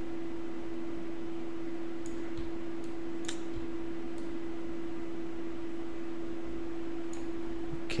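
Steady electrical hum and hiss of the recording setup, with about four faint computer-mouse clicks spread through it.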